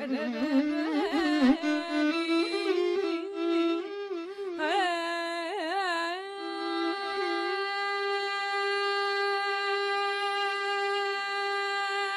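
Carnatic vocal music: a woman sings ornamented, gliding phrases with violin accompaniment. From about six seconds in, the music settles onto one long held note.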